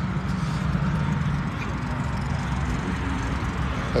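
A car engine idling nearby: a steady low hum with faint outdoor background noise.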